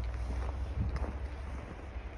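Wind buffeting the phone's microphone as a steady low rumble, with a couple of faint crunching footsteps in packed snow.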